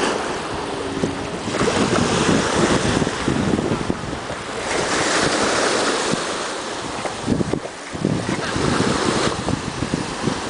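Small waves washing up and draining back on a sandy shore, swelling and easing every few seconds, with wind buffeting the microphone.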